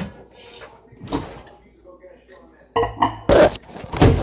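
Kitchen handling noise: a sharp knock about a second in, then, from near the end, a low steady hum under several loud thumps and knocks.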